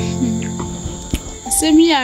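Crickets trilling steadily under soft background music with sustained low tones and a short gliding melody near the end.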